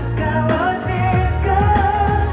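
Live pop song: a male singer's voice carrying the melody over soft acoustic guitar, bass and light drums.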